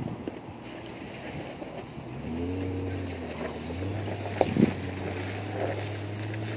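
A 2002 Jeep Grand Cherokee's engine, out of sight, comes in about two seconds in and then runs at a steady low pitch, with two short, louder knocks a little past the middle.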